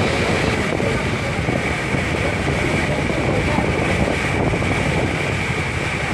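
Steady rumble of a river passenger launch running underway, with a constant high whine and wind on the microphone.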